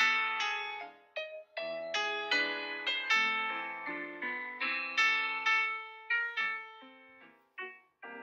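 Recorded solo piano accompaniment for a ballet barre exercise: a steady run of struck chords that each ring and fade, with a short pause near the end.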